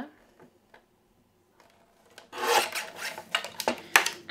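Sliding blade of a paper trimmer drawn through a sheet of patterned paper in one stroke, a rasping cut lasting about a second and a half, ending with a sharp click.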